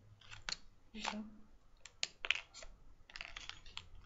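Steel T-pins being pulled from the work and dropped onto a pile of loose pins: a scatter of light metallic clicks and clinks.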